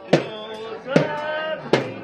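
Hand drum struck hard three times, about one beat every 0.8 s, under a group of voices singing held notes: restaurant staff drumming and singing to celebrate a birthday.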